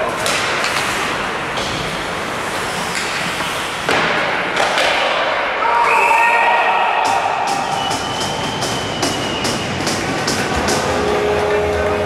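Ice hockey play in a rink hall: skating and stick noise, with a sudden sharp hit about four seconds in. Then come shouts, and a referee's whistle held for about two seconds as a goal is signalled. A run of sharp taps follows, about three a second.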